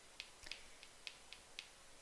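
Near silence: quiet room tone with faint small clicks that come a little faster as it goes on, about three or four a second by the end.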